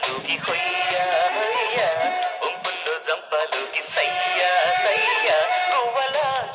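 Telugu film song: a sung melody with wavering, ornamented notes over percussion and accompanying instruments.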